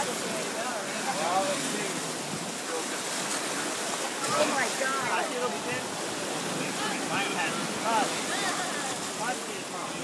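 Background chatter of several people over the steady wash of shallow surf, with some wind noise.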